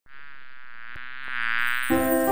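Buzzing bee sound effect for an animated cartoon bee: a steady buzz, wavering slightly in pitch, that grows louder as the bee flies in. A jingle's first notes come in just before the end.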